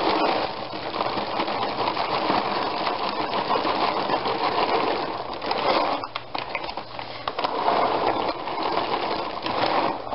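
Dry dog kibble pouring from its paper sack into a foil storage bag, a dense continuous rattle of small pellets hitting the bag and each other, with a brief let-up about six seconds in.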